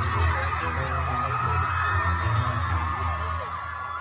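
Concert music with a heavy bass line playing through the arena sound system over a screaming, cheering crowd. The bass drops out shortly before the end while the screaming goes on.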